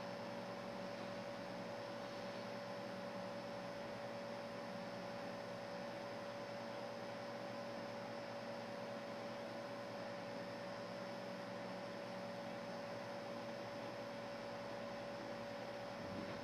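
Steady hum with one constant mid-pitched tone over a soft hiss, unchanging throughout: the room tone of a running computer.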